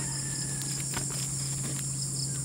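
Continuous high-pitched chorus of insects in the surrounding vegetation, running steadily, with a low steady hum beneath it and a few faint ticks.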